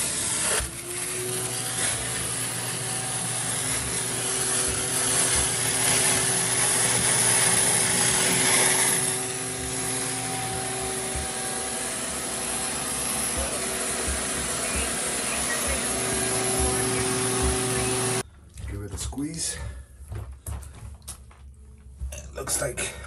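Shop vac running steadily, sucking water up through a small hole in a bathtub liner from the gap trapped beneath it, then switched off suddenly about 18 seconds in. Light knocks and handling follow.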